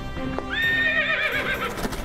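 A cartoon winged unicorn whinnies with a horse's neigh. It rises to a high pitch, holds, then quavers for about a second, over background music.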